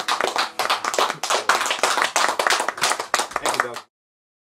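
Small audience applauding, many separate hand claps close together, which cuts off suddenly just before the end.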